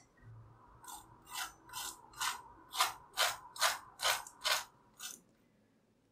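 Crispy oven-baked chicken wing skin crunching: a run of about ten short, crisp crunches, roughly two a second, starting about a second in and stopping about five seconds in.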